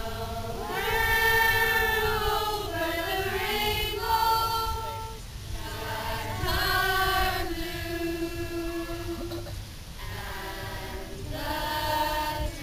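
A mostly female group of young singers singing together unaccompanied, in sustained notes and phrases with brief breaths between.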